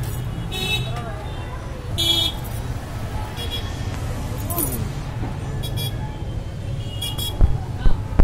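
Outdoor street ambience: a steady low traffic rumble with faint distant voices and several short, high-pitched toots or chirps. A few sharp knocks come near the end and are the loudest sounds.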